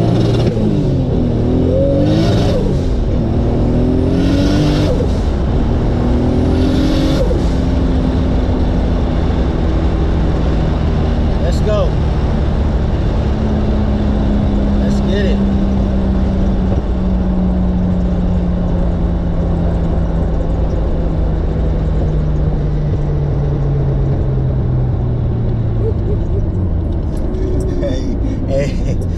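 Turbocharged 2JZ-GTE straight-six engine of a 1996 Lexus SC300, heard from inside the cabin, pulling hard through the gears of its CD009 six-speed: the revs climb and drop at three quick upshifts in the first seven seconds, each shift with a short burst of hiss. It then settles into a steady cruise, its note slowly falling.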